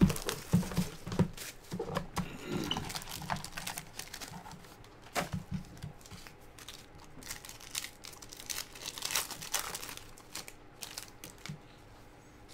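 Foil wrapper of a Panini XR football card pack crinkling and tearing as it is opened by hand, in irregular crackles and small clicks.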